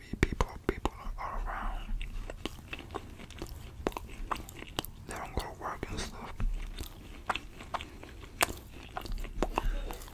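Close-miked chewing and wet mouth clicks of a person eating a meal, with many sharp clicks throughout.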